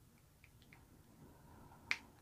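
Small plastic cap being handled on a skincare container: a few faint ticks, then one sharp click near the end.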